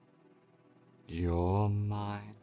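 A man's voice making one long, low, slow intoned sound, like a chanted mantra, starting about halfway in and holding to the end, with a slightly wavering pitch. Before it there is near silence with a faint steady background tone.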